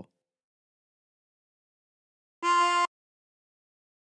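A single short draw note on a 24-hole tremolo harmonica, breathed in through hole four to sound F, held steady for about half a second. It comes about two and a half seconds in, with silence around it.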